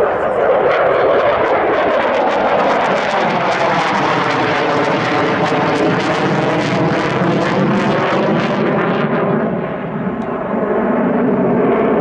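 Saab JAS 39C Gripen's single Volvo Aero RM12 turbofan running hard as the jet flies its display close overhead. It is a loud jet rush that sweeps in tone as the aircraft passes, crackling through the middle, then eases briefly about ten seconds in and swells again.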